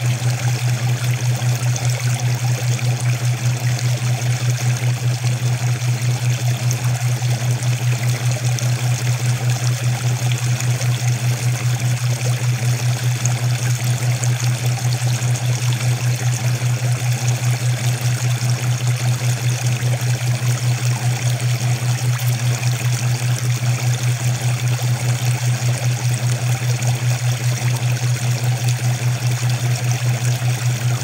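Steady running-water sound over a loud low hum that pulses evenly several times a second. This is the masking track of a subliminal audio recording, and the water layer is what covers the hidden affirmations.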